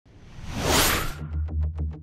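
Whoosh sound effect of a TV advertising-break ident, swelling up and cutting off about a second in. An electronic music bed follows, with a steady bass and a quick ticking beat.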